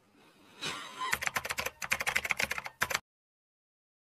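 A rapid run of clicks like fast typing on a computer keyboard, about a dozen a second for roughly two seconds. The sound then cuts off abruptly to dead silence about three seconds in.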